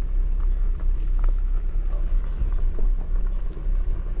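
Off-road vehicle driving slowly over a rough dirt trail, heard from inside the cab: a steady low rumble from the engine and tyres, with scattered small knocks and rattles.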